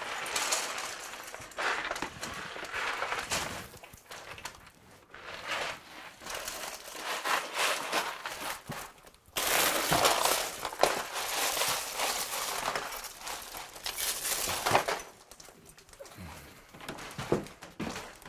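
Loose plastic LEGO Technic pieces spilling out of their box and clattering together, with rattling and scraping as the pieces and box are handled. A sudden louder spill comes about nine seconds in.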